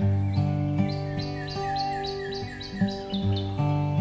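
Acoustic guitar playing an instrumental passage of chords, with a songbird singing a run of about nine quick repeated falling chirps over it, which stops shortly before the end.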